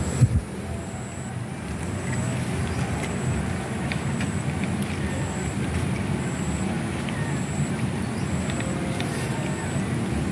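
Steady low rumbling background noise with one sharp thump just after the start. A faint high tone pulses about once a second.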